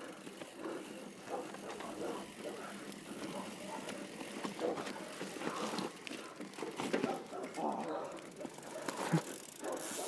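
Quiet, indistinct voices talking, with scattered light clicks and rattles from the mountain bikes.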